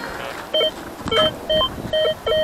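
Metal detector giving short repeated beeps, about two a second and all at the same pitch, as its coil is swept back and forth over a buried target that the detectorists read as non-ferrous metal.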